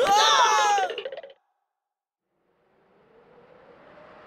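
A cartoon character's wailing cry with a gliding, wavering pitch, cut off abruptly after about a second. Then comes total silence, and a faint hiss swells up near the end.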